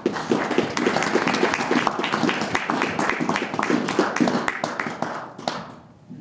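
Small audience clapping, starting together and thinning out to a few last claps before fading about five and a half seconds in.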